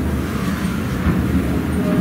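A steady low rumble of background noise with no distinct events.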